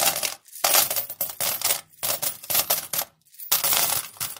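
Coins dropping and clinking together in a run of short jingling bursts, with brief gaps between them.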